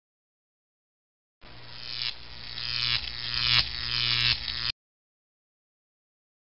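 Recorded Boeing 737 flight-deck warning rattle: a mechanical, buzzing rattle that starts about a second and a half in, pulses about every three quarters of a second while growing louder, and cuts off suddenly after about three seconds.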